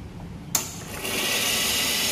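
A sharp click, then hot water jetting from the hot-water outlet of a La Spaziale Mini Vivaldi II espresso machine onto the metal drip-tray grate, with a steady hiss from about a second in.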